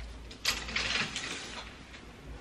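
A curtain being drawn open along its rail, its runners sliding and rattling. It starts about half a second in and lasts about a second.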